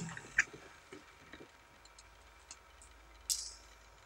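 A few faint clicks from a gimbal-mounted gyroscope being handled, then about three seconds in a short hissing whir as its string is pulled to spin up the rotor.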